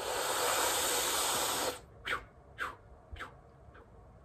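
A man's long, deep breath lasting a little under two seconds, followed by a few faint, short mouth sounds.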